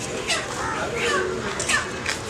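Chickens squawking in short, sharp, repeated cries over people talking at a poultry stall.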